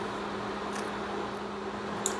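Steady electrical hum and fan-like noise from a running electric cooktop, with a couple of faint scrapes from a silicone spatula stirring thick custard in a stainless steel pan.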